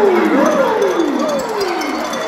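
Eerie gliding tones from the concert PA, theremin-like, each rising briefly and then sliding down in pitch, repeating about every half second over the crowd's noise in the darkened arena.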